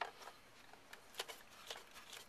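A few faint, light clicks and handling noise from hands on the plastic housing of a Rainbow E-Series vacuum power nozzle.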